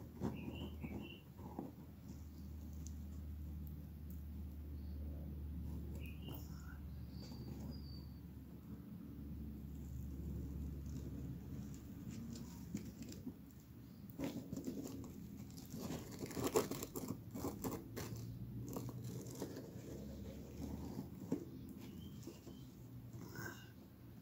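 Light handling sounds, rustling and scattered small clicks, over a low steady hum, busiest about two-thirds of the way through.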